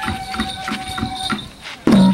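Lion-dance festival music: a bamboo flute holds a long high note over light, even taps about three a second. Near the end the dancer's waist drum comes back in with loud beats and the flute moves to a new note.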